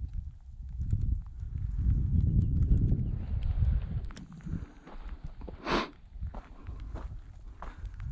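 Footsteps crunching on loose gravel and rock, irregular steps with a low rumble on the microphone through the first half and one brief sharp sound just before six seconds in.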